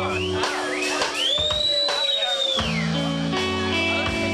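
Live rock band playing; the bass drops out for about two seconds while an electric guitar squeals, gliding up to a high held pitch and sliding back down before the full band comes back in.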